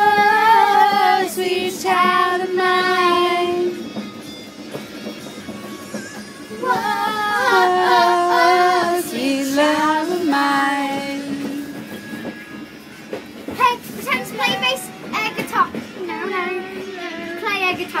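High voices singing along to disco music, with long held, wavering notes. The singing drops away about four seconds in, returns with long notes a couple of seconds later, and turns to short, quick phrases near the end.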